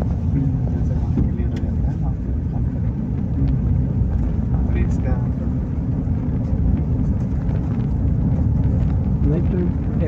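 Steady low drone of a vehicle's engine and tyres on an unpaved road, heard from inside the cabin while driving, with faint voices in the background.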